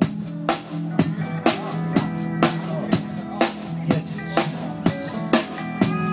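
Live band music: a steel pan playing short bright melodic notes over a drum kit keeping a steady beat of about two strikes a second, with a sustained bass line underneath.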